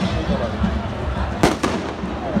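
Two sharp firecracker bangs in quick succession, about a fifth of a second apart, near the end, over the steady chatter of a large outdoor crowd.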